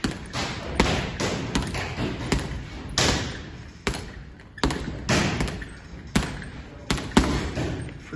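Boxing gloves landing punches on a spinning reflex-ball arm mounted on a leather heavy bag: about a dozen sharp thuds at an uneven pace, each dying away briefly.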